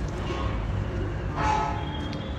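A horn sounds once in the second half, held for about half a second over a steady low background rumble.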